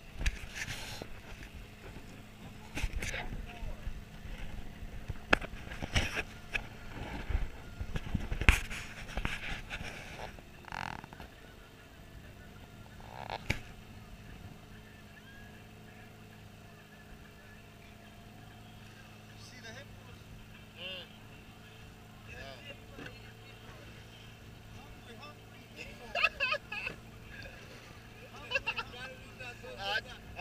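Boat engine running steadily as a wooden boat moves across open water, an even low hum throughout. Irregular thumps sound over it, densest in the first ten seconds.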